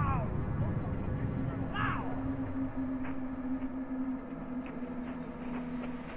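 Low rumble of the distant ammonium perchlorate plant explosion on the original field recording, easing after about two seconds. Two short voice-like calls fall in pitch near the start and at about two seconds, and a steady hum runs behind.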